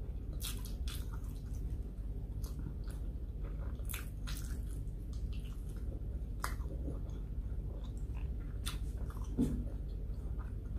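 A person chewing and biting a mouthful of sautéed eggplant and rice close to the microphone: irregular wet mouth clicks and smacks over a steady low hum. A short thump about nine seconds in.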